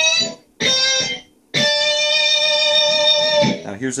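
Electric guitar, an SG-style solid body, playing a short lick on the high E string: a brief note, a lower note, then a higher note at the 10th fret held for about two seconds before it dies away.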